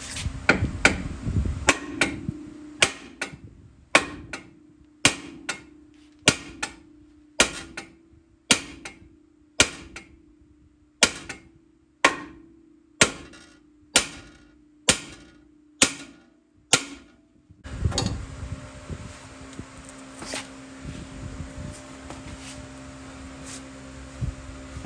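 A hammer strikes the steel steering knuckle of a 2003 Ford F-150 about twenty times, roughly one blow a second, to shock the ball-joint tapers loose from the knuckle. Each blow rings briefly. The blows stop a few seconds before the end, and a steady hum follows.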